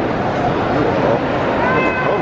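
Crowd of many people talking at once, a steady babble, with a high, drawn-out voice briefly standing out above it near the end.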